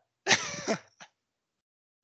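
A man's short, breathy laugh lasting about half a second, followed by a brief click.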